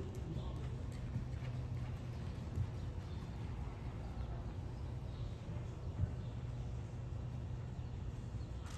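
A horse cantering on soft sand arena footing, its hoofbeats coming as faint muffled thuds over a steady low rumble, with two slightly sharper thuds about two and a half and six seconds in.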